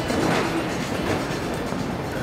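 A horse's canter hoofbeats in a steady rhythm on the arena footing, against a dense rumble of arena noise and faint background music.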